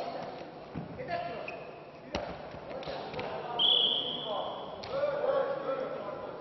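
A referee's whistle is blown once, a steady high note of about a second near the middle and the loudest sound here. Just before it there is a single sharp thud as the wrestlers go down onto the mat, with voices calling out around the bout throughout.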